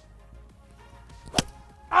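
A golf club striking a ball off a hitting mat: one sharp, clean crack about one and a half seconds in.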